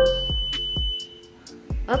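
Alert chime from a Google smart display signalling a water-leak warning. A short rising tone leads into a steady high-pitched tone that stops about a second and a half in, and the spoken leak announcement begins near the end.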